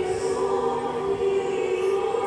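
A group of voices singing a slow hymn together, holding long notes, echoing in a large church.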